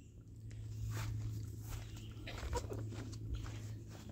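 Faint footsteps on grass and dirt, a few soft steps, over a steady low hum.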